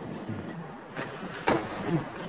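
A sharp knock about one and a half seconds in, with a smaller click before it and rustling handling noise, as the handheld phone camera is jerked around in a mock tumble.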